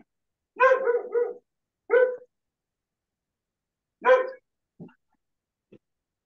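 A dog barking in short loud calls: a quick run of barks in the first second and a half, then single barks about two seconds and about four seconds in.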